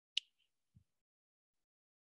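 A single short, sharp click, then a faint low thump under a second in.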